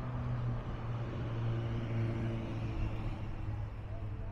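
A motor vehicle's engine running close by, a steady low hum that swells a little mid-way and eases near the end, over general city traffic noise.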